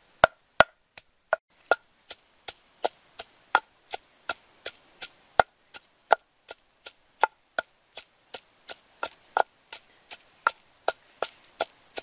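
Wooden pestle pounding red chilies in a wooden mortar: steady, evenly spaced knocks, about three a second.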